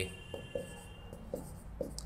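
A pen writing on a board: a few faint short strokes, with a thin high squeak in the first second.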